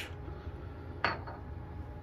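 A single light clink of a small hard object set down on the counter about a second in, with a brief ring after it.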